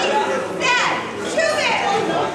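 A group of women's voices shouting and whooping a cheer, with two high calls that slide down in pitch.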